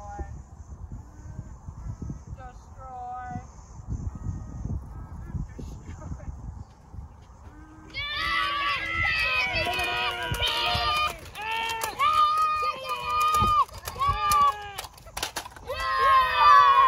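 A low rumble for about the first eight seconds, then a loud string of short held vocal calls on flat, honking pitches, starting and stopping several times a second.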